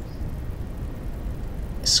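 Steady low background rumble with no distinct events; the first sound of a spoken word comes in just before the end.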